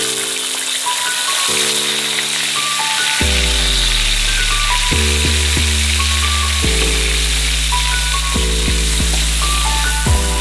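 Sliced shallots, garlic and tomato sizzling in hot oil in a wok, a steady hiss under background music; the music's bass comes in about three seconds in.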